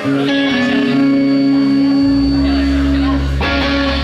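Electric guitars holding a sustained, ringing chord through a live PA. A deep bass guitar note comes in about halfway through.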